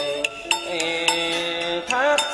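Vietnamese chầu văn ritual music: a sustained melodic line holding notes and sliding between them, over sharp percussion strikes about twice a second.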